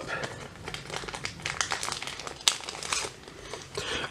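Soft plastic penny sleeves crinkling as trading cards are slid into them: a run of small irregular crackles and rustles, with one sharper click about two and a half seconds in.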